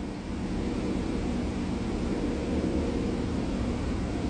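A steady low rumble of background noise, even in level, with no distinct events.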